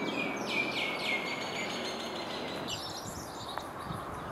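A songbird singing a quick run of chirped notes in the first second and a half, then a shorter burst of higher chirps about three seconds in, over a steady outdoor background hiss.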